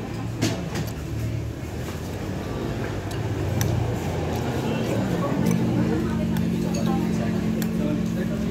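A metal spoon clinks against a ceramic soup bowl a few times, the sharpest click about half a second in. Under it runs a low hum of road traffic that settles into a steady drone about halfway through.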